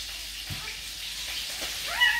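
Newborn puppy giving a short, rising squeaky whine near the end, over a steady faint hiss.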